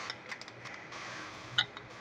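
Quiet handling sounds at a countertop blending appliance: a few faint clicks and a slightly louder tap about one and a half seconds in, over a soft hiss, with the motor not running.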